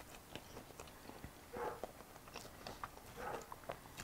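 A man biting into a toasted grilled cheese sandwich and chewing: faint crunches and soft mouth sounds.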